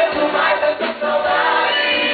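Live sertanejo music: voices singing together over the band's accompaniment.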